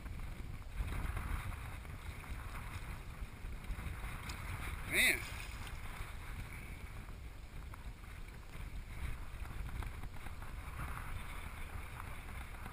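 Steady wind rumble on the camera microphone over the wash of shallow seawater that mating nurse sharks are churning and splashing.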